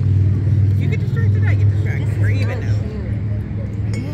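Steady low engine hum running throughout, with faint indistinct voices over it.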